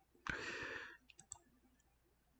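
A short, soft breath into the microphone, followed about a second in by a few faint small clicks.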